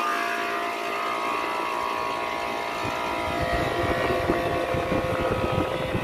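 Window-type air conditioner running just after being switched on at its control knob: a steady, even hum with several fixed tones, joined by a rougher low rumble that grows from about three seconds in.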